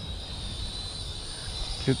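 Small toy quadcopter's motors and propellers whining at a steady high pitch that wavers slightly, under low rumbling wind on the microphone. A man's voice starts just before the end.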